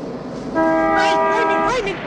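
A vintage car's horn sounded once and held for just over a second, a steady chord of several tones and the loudest thing here.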